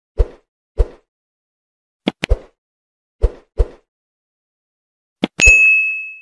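Sound effects of an animated like-and-subscribe graphic: a string of short pops and clicks, some in quick pairs, then a bright bell-like ding near the end that rings on for about a second.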